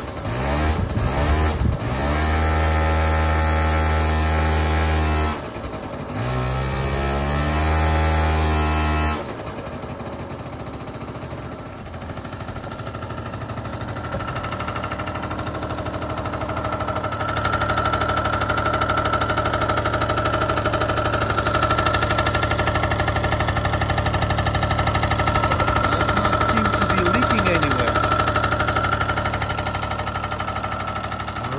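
Honda Gyro's 49cc two-stroke engine running: a few revving blips, two stretches held at high revs with a short dip between, then settling about nine seconds in to a steady lower run. The owner says it still needs a fuel filter and a carburettor adjustment.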